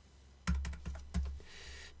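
Computer keyboard being typed on in a quick run of clicks, starting about half a second in, with a couple of heavier thuds among them: a code being keyed into stock-trading software to switch the chart.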